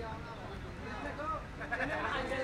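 Indistinct voices of people at a busy event, no single speaker clear, with one raised, higher voice standing out about a second in and more voices joining near the end.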